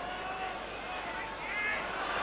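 Steady crowd noise from a football ground's terraces, with a brief faint call rising out of it about one and a half seconds in.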